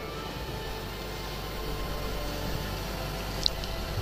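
Low, steady background noise with a faint hum, and one brief faint high tick about three and a half seconds in.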